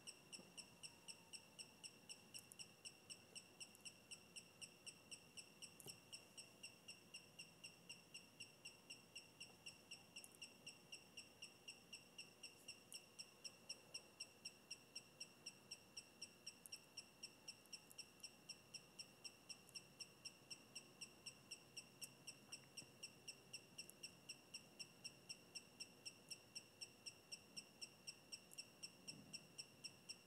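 Faint, high-pitched beeping from a brushless gimbal motor, pulsing evenly about four times a second, as the SimpleBGC auto PID tuning drives and tests the yaw axis.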